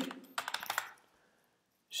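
A quick run of keystrokes on a computer keyboard, typing a short search term into a search field.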